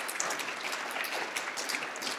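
Audience applauding, a steady patter of many hands clapping at moderate level.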